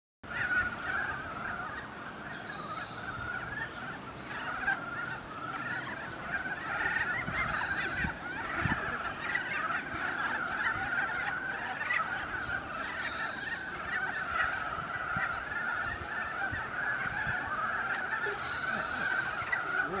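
A breeding chorus of many Ezo brown frogs (Rana pirica): dense, overlapping short calls that never let up, almost bird-like in sound.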